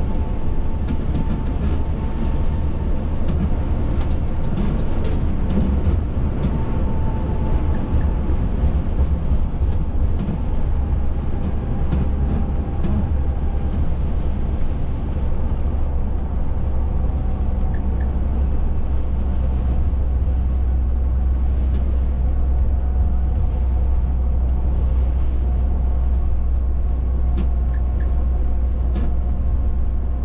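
Inside the cab of a Volvo B9R coach cruising on the highway: a steady low drone from the engine and driveline with tyre and road noise, and light clicks and rattles, mostly in the first half.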